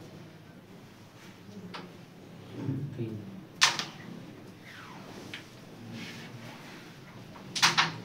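A carrom striker is flicked across the board and strikes the carrom men with one sharp clack about halfway through. A quick double click of wooden pieces follows near the end. Faint murmuring voices run underneath.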